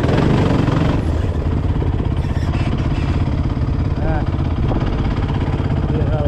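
An off-road vehicle engine idling steadily close by, with an even low pulsing.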